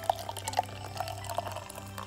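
Warm water poured from a plastic measuring jug into a stainless steel mixing bowl of dry mix, with an irregular patter of small splashes and drips.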